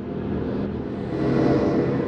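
A motor vehicle's engine rumbling steadily, getting a little louder about halfway through.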